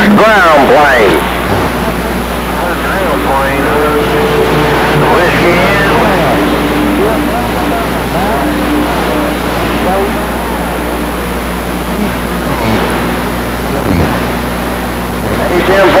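10-meter radio receiver's speaker hissing with band static, faint voices of distant stations drifting in and out under the noise. A few short steady whistling tones come and go.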